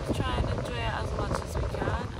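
Wind buffeting the phone's microphone in a gusty low rumble, with people's voices talking in the background.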